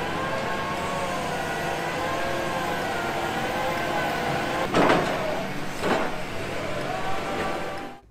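Diesel engine of a Bauer rotary drilling rig running steadily, with a wavering machine whine over it. Two brief knocks come about five and six seconds in.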